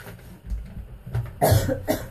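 A person coughing: two quick coughs about one and a half seconds in, the second shorter.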